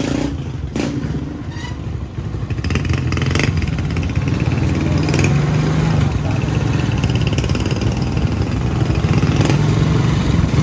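Motorcycle engine of a tricycle (motorcycle with sidecar) running as it rides along, growing louder about two and a half seconds in, with a few clattering knocks from the sidecar.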